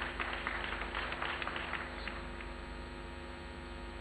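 Faint room tone with a steady electrical hum. A light scatter of faint ticks and rustle fades away about two seconds in.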